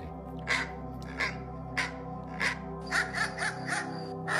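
A small dog's short, harsh barks, about seven in all, coming faster near the end, over steady background music.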